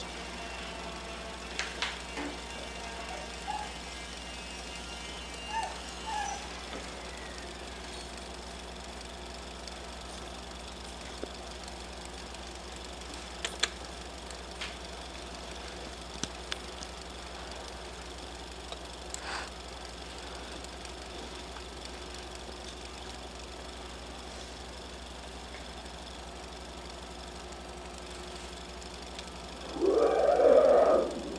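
Low steady hum and hiss of room tone, with faint held tones in the first several seconds and a few scattered faint clicks later on.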